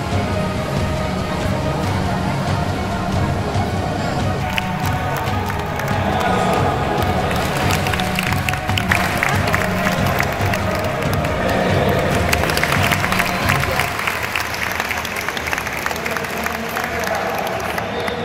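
Music with a low beat over the hubbub of a crowd in the stands, with a stretch of applause and cheering about halfway through.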